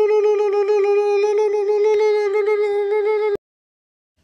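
A loud cartoon sound effect: one long note held at a steady pitch for about three and a half seconds, then cut off suddenly.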